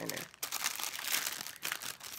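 Clear plastic packaging bag crinkling as a stack of stickers is pushed back into it, a dense run of small crackles starting about half a second in.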